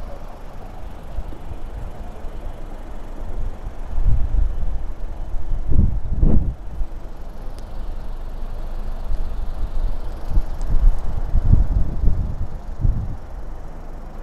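Wind buffeting the microphone: irregular low rumbling gusts, strongest about four to seven seconds in and again near the end.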